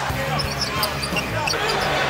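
Basketball game sound: arena crowd noise with short high sneaker squeaks on the hardwood floor, under steady backing music.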